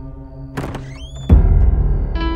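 Horror film score under a low sustained drone: a sharp hit about half a second in, with quick rising whistling glides, then a loud, deep boom past the middle that rings on.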